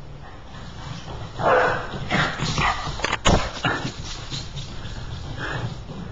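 A Boston terrier barking in several short bursts, with a sharp knock about three seconds in.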